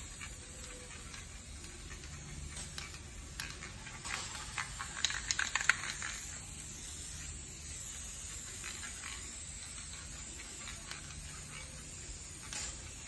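Aerosol spray paint can hissing faintly in short sprays close to the painting surface, with a quick run of sharp clicks about five seconds in.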